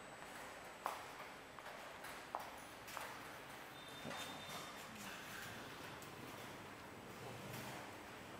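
Faint room tone with a few light, sharp clicks or knocks, three of them in the first three seconds.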